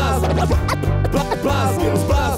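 Hip hop track's instrumental passage: turntable scratching, many short quick pitch swoops, over a steady bass line and drums.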